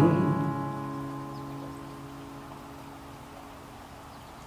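Final chord on an acoustic guitar ringing out and fading away over about two seconds as the song ends.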